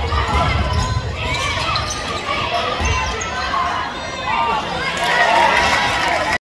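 Basketball game on a hardwood gym floor: the ball being dribbled, with sneakers squeaking and players and spectators calling out.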